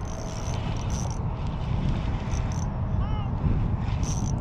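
Wind rumbling on the microphone while a spinning reel is cranked to bring in a hooked fish, with short bursts of reel whir. A faint voice is heard briefly about three seconds in.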